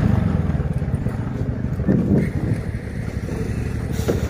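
Motorcycle engine running at low speed while riding slowly over rough grass: a steady low drone that eases off a little in the second half.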